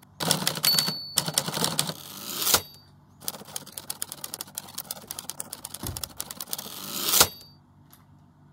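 Typewriter sound effect: rapid runs of keystroke clacks as title text types itself out. A bell dings three times: about a second in, midway, and near the end.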